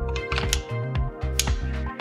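Background music with two sharp clicks, about half a second and a second and a half in, from the camera's quick-release plate being seated and latched onto the Sachtler Ace fluid head.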